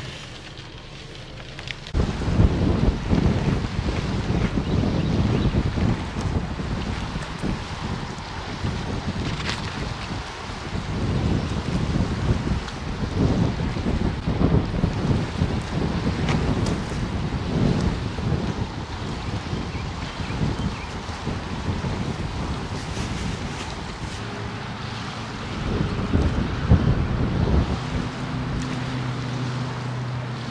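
Wind gusting hard against the microphone, with small waves washing against a lakeshore beneath it. The gusts start about two seconds in, and a low steady hum joins near the end.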